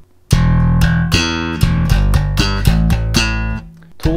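Electric bass, a Jazz-style bass, playing a slap line: thumb-slapped low notes on the open E string and popped octaves, in a run of about a dozen quick notes with a swing feel. It starts a moment in and rings out shortly before the end.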